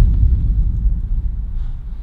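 A sudden deep boom whose low rumble fades away over about two seconds.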